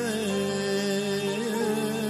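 Live Kurdish folk song: a male singer holding a wavering, ornamented note over steady, unbroken accompaniment.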